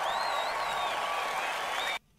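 Live concert audience applauding at the end of a song, with a high wavering tone above the clapping. It cuts off suddenly near the end.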